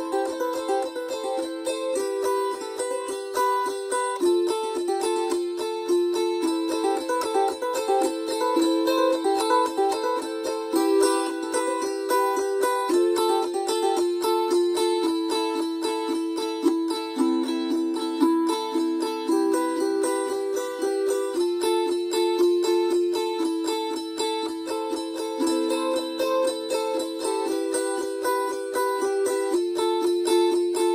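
Wing-shaped gusli (Baltic psaltery) strummed rapidly over a ringing drone string, the left-hand fingers muting strings so that only the notes of each chord sound. The chord changes every few seconds, moving lower briefly past the middle and again near the end.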